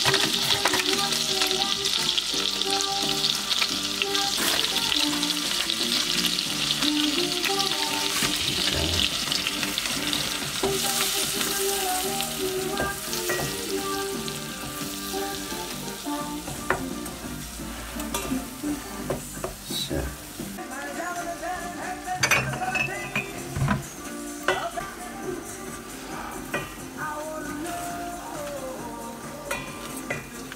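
Hot fat and sugar sizzling in a small stainless-steel saucepan as a light roux is started. The sizzle is strongest in the first half and dies down, and from about halfway a spoon scrapes and taps against the pan as it is stirred. Background music plays underneath.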